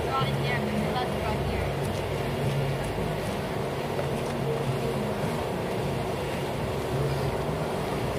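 A steady low mechanical drone, like an engine running, with faint voices of people around it.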